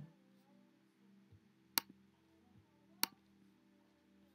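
Two sharp clicks about a second apart, from clicking through web pages on a laptop, over a faint steady hum and buzz from the laptop, which is busy uploading a video.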